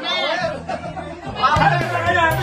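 Several men talking and calling out at once, with music coming in under them; a deep bass note enters in the second half.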